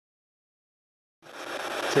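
Dead silence, then about a second in a steady hiss of recorder and room noise fades in and grows louder, with a faint click near the end.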